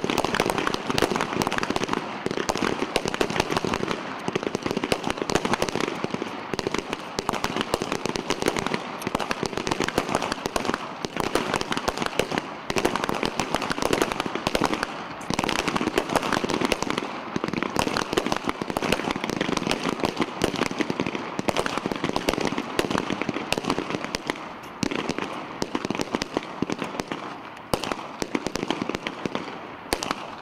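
Pistol gunfire from a line of shooters firing at once: many sharp shots overlap into a dense, continuous crackle.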